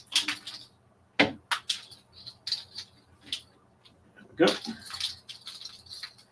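Light, irregular clicks and clacks of takadai tama (braiding bobbins) knocking together as threads are lifted and moved across the koma during a braiding move.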